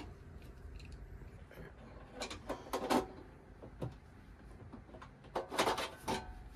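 IKEA Maximera drawer-front fitting being released with a screwdriver: a cluster of clicks and clacks about two seconds in, and another near the end as the front bracket comes off the drawer side.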